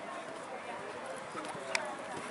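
Show-jumping horse cantering on a sand arena, its hoofbeats under a murmur of distant voices. There is one sharp click near the end as it goes over a fence.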